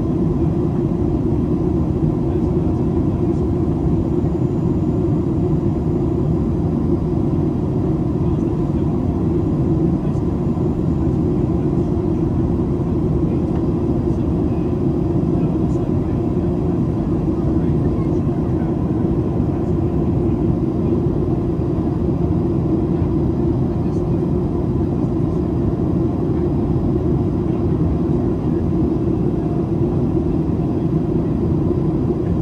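Steady cabin noise of a Boeing 737-800 in flight on its descent: the deep rush of airflow and the drone of its CFM56-7B turbofan engines heard from a seat over the wing, with a faint steady tone near the middle.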